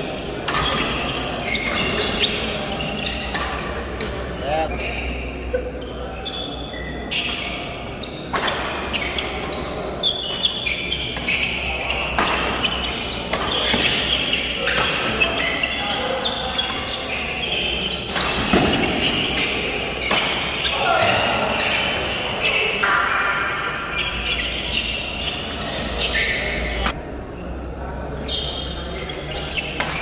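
Badminton rackets striking a shuttlecock in a doubles rally, a string of sharp hits, over the steady chatter and calls of a crowd of spectators in a large, reverberant hall.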